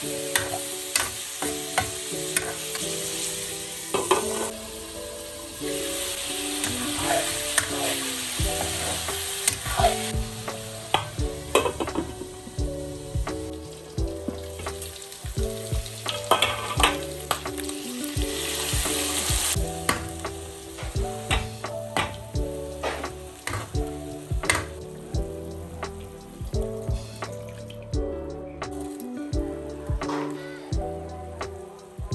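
Pork belly cubes sizzling as they fry in oil in a metal wok, with a metal spatula repeatedly scraping and clicking against the pan. The sizzle thins out about two-thirds of the way through, and soft background music runs underneath.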